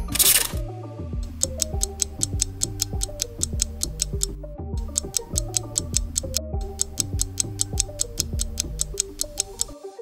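Quiz countdown timer music: a ticking clock beat of about four ticks a second over a bass line and a simple melody, opened by a short whoosh. The music drops out briefly twice.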